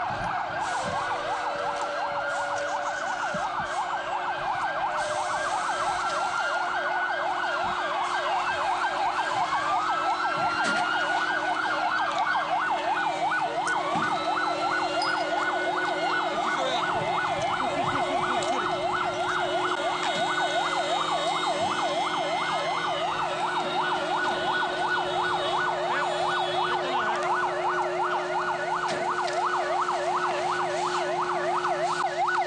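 Several emergency-vehicle sirens sounding at once: slow rising-and-falling wails every few seconds over a fast, rapid yelp, with the yelp growing denser partway through.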